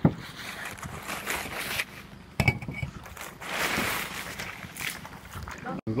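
Plastic sheeting rustling and crinkling as it is pulled off the top of a half-built wall. There is a sharp knock about two and a half seconds in.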